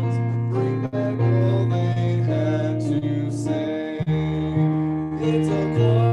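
A gentle song played with acoustic guitar, sung over the accompaniment, with sustained notes and a steady bass.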